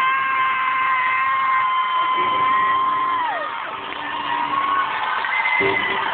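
Concert crowd cheering, over which one fan gives a loud, high-pitched scream. The scream rises, is held steady for about three seconds, then falls away. More shorter screams follow near the end.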